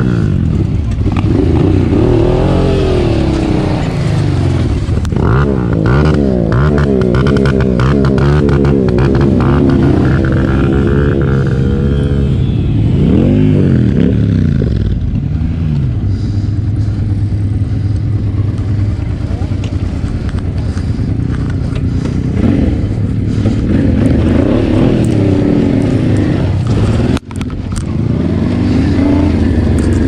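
Honda Transalp V-twin motorcycle engine heard from the rider's seat, revving up and falling back again and again as the bike is ridden slowly on dirt. The sound breaks off for a moment about three seconds before the end.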